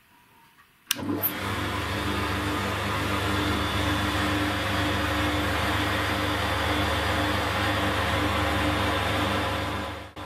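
A homemade disc sander is switched on with a click about a second in, then runs steadily: an electric motor driving a car wheel hub and its sanding disc through a belt, with a low hum.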